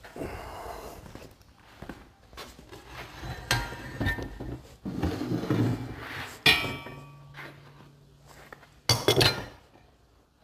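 Heavy steel grapple parts and hand tools clanking and knocking against each other and the wooden workbench as the grapple is taken apart. Several sharp metallic clinks ring briefly, the loudest about six and a half seconds in, with another cluster near the end.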